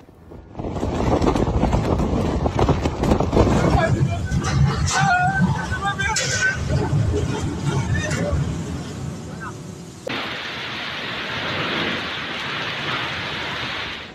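Storm wind buffeting the microphone in heavy gusts, with voices calling out in the middle. About ten seconds in it cuts to a steady hiss of heavy rain and wind.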